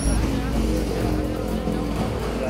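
Background music with sustained low notes and a deep bass rumble, over road traffic noise.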